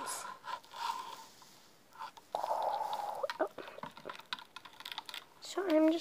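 Plastic straw stirring glitter water inside a plastic water bottle: scattered clicks and scrapes of the straw against the plastic, with a short rubbing rush about two seconds in.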